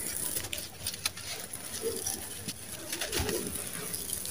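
Dry, gritty sand-cement crumbling in the hands and sifting through the fingers onto loose cement, a steady fine crackle of falling grains. Two short, low sounds cut across it, about two and three seconds in.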